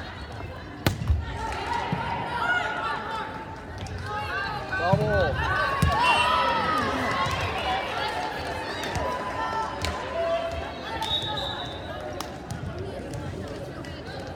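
Volleyball being played in a gymnasium: a sharp smack of a serve about a second in, further hits of the ball, and players' and spectators' shouts echoing in the hall, loudest around the middle.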